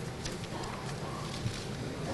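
Quiet room tone in a pause between spoken sentences, with a few faint small clicks.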